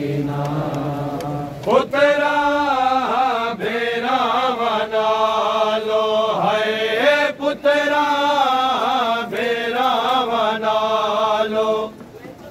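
Men chanting a noha, an unaccompanied Shia lament in Punjabi: long, wavering, ornamented sung notes, with a louder, higher lead voice coming in about two seconds in.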